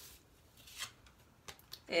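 A tarot card being drawn from the deck by hand: a brief papery rustle as it slides out, then a few light card clicks.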